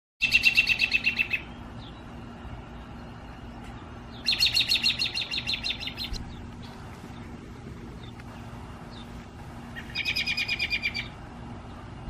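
American robin calling: three bursts of rapid, evenly repeated high notes, about ten a second, each lasting one to two seconds, near the start, in the middle and near the end.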